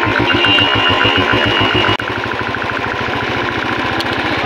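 Royal Enfield motorcycle engine running with an even, pulsing beat, heard from the rider's seat. About halfway through the beat becomes quicker.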